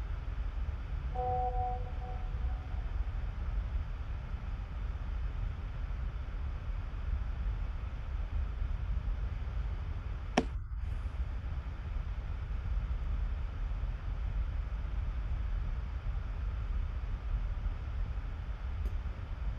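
Steady low rumble of background noise from an open microphone on a video call, with a brief tone that fades out about a second in and a single sharp click about ten seconds in.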